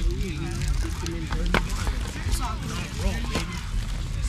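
Indistinct chatter of young voices over a steady low rumble, with one sharp click about one and a half seconds in.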